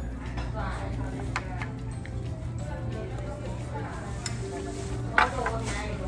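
Restaurant room tone: a steady low hum with soft background music and murmur, and a few light clinks of a spoon against dishes while rice is served, the sharpest a little before the end.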